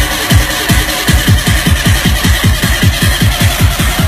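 Electronic dance music played loud over a club sound system, with a deep kick drum whose hits come faster and faster, like a build-up roll.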